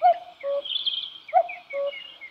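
Common cuckoo calling its two-note "cuck-oo", a higher note dropping to a lower one, twice. Other songbirds chirp faintly behind it.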